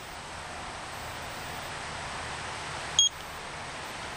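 A steady, even hiss of background noise with no speech, broken about three seconds in by one short, high electronic beep.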